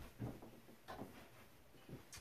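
A few faint, short soft thuds and shuffles, about four in two seconds, from two people moving through a hand-to-hand drill: footsteps and bodies making light contact.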